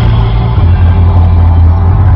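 Loud intro music sting: a dense rushing noise over heavy sustained bass notes, with the bass shifting about half a second in.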